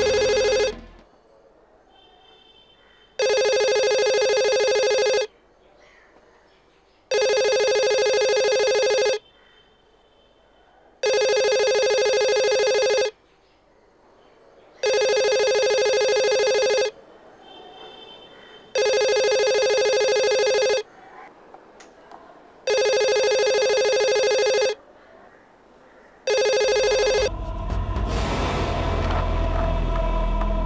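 Telephone ringing with a steady electronic tone that sounds about two seconds on, two seconds off, six full rings in a row. Near the end the last ring is cut short and a low rumble with music swells up.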